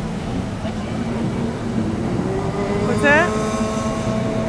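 Engines of racing jet skis running hard on the water as a steady drone. About three seconds in, one engine's whine swoops up and then holds at a high steady pitch as that ski accelerates.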